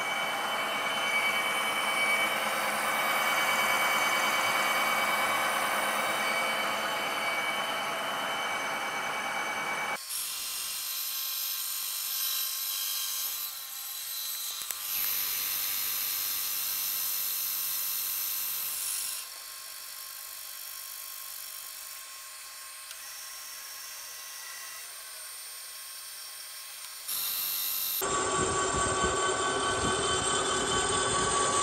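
Face mill cutting across the metal base of a dividing-head tailstock on a vertical knee mill: a steady, squealing machining whine with high ringing tones. It drops abruptly about ten seconds in, drops again past the middle, and comes back loud near the end.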